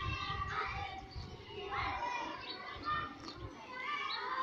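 Several children's voices talking and calling over one another in the background.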